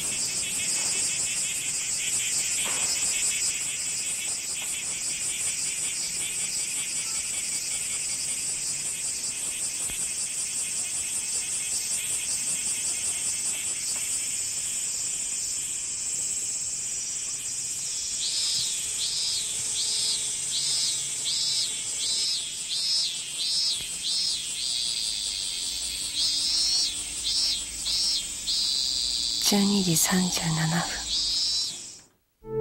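Cicadas in a steady, shrill summer chorus. From a little past halfway, one begins a rhythmic pulsing call of about two pulses a second, which breaks off and starts again before the end.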